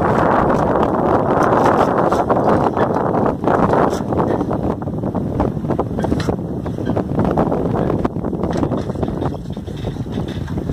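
Wind blowing across the microphone: a loud, gusty rush, strongest in the first few seconds and easing after that.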